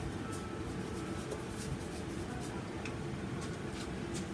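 Light scattered ticks and scratches of a painting tool working paint onto a stretched canvas, over a steady low room hum.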